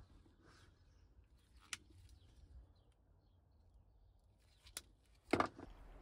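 Quiet room tone broken by two single sharp clicks, about three seconds apart, from a hand-held wire stripper being worked on cable, with a short burst of handling noise near the end.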